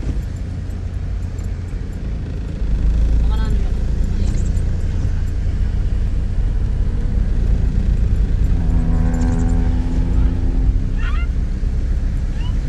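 Car cabin noise while driving on a wet road: a steady low rumble of engine and tyres that grows louder about three seconds in.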